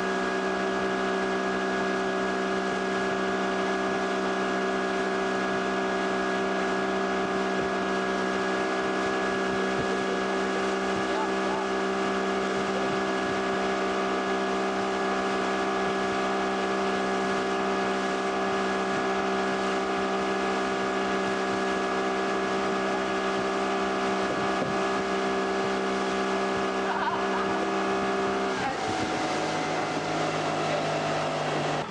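Mercury outboard motor on a ski boat running steadily at towing speed, with water and wind noise. Near the end it is throttled back and its pitch drops as the boat slows.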